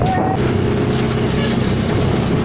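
A vehicle engine running steadily at one speed, with a short high tone right at the start.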